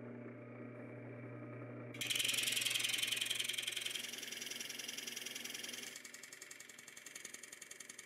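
Drill press running with a rosette cutter spinning, first as a steady motor hum. About two seconds in, the cutter blades bite into the wood guitar top and add a louder rasping cut with a fast, even chatter, which eases off in the last couple of seconds as the rosette channels are cut.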